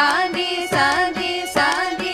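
Two women singing a Carnatic voice exercise (abhyasa) together, moving through short notes with quick pitch glides, accompanied by steady mridangam strokes.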